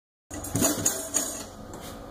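Light clattering of drum kit hardware being handled, with a few sharp knocks in the first second and fainter rattling after.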